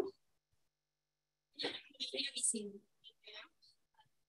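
Near silence, then a brief stretch of faint, low speech about one and a half seconds in, much quieter than the miked voices around it.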